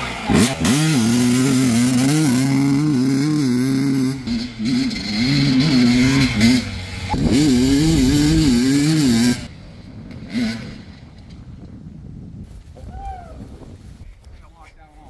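2001 Kawasaki KX250's two-stroke single-cylinder engine running and revving, its pitch rising and falling again and again with the throttle. About nine seconds in the sound drops suddenly and becomes much quieter and more distant.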